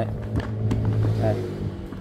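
A steady low hum with a couple of light clicks as a spin-mop head is set down onto the centre spindle of its plastic bucket.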